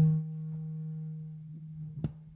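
Steady low electrical hum from a public-address system, with faint ringing tones that trail off over about a second and a half after the last word. Near the end comes a knock as the microphone is lifted from its stand.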